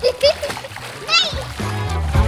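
Pool water splashing as a swimmer ducks under into a handstand, with a child's brief laugh and a rising squeal. Background music comes in about halfway through.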